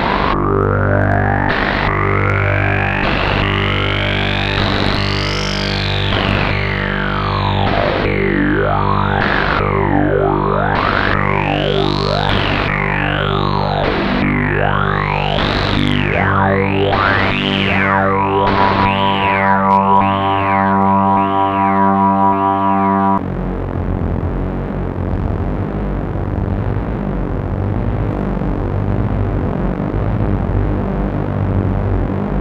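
PAiA Fat Man analogue synthesiser holding a droning note while a resonant peak is swept up and down by hand, each sweep repeated by the echoes of a 1982 Powertran DIY digital delay line. The sweeps come faster and narrower, then stop suddenly about two-thirds of the way through, giving way to a rougher, noisier low sound.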